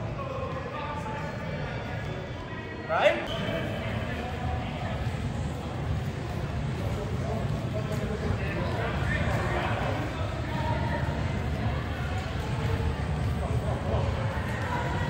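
Indistinct voices of children and adults echoing in a large indoor hall, with one short loud call about three seconds in, over soft thuds of soccer balls being dribbled on artificial turf and a steady low rumble.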